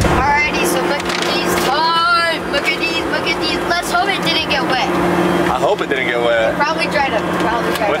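Steady low drone of a private jet's cabin, with excited voices and exclamations over it.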